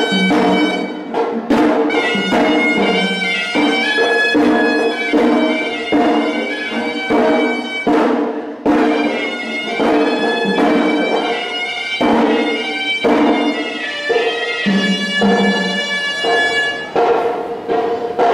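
Temple ceremonial music: a shrill reed pipe holds a sustained, stepping melody over drum strikes that come about twice a second.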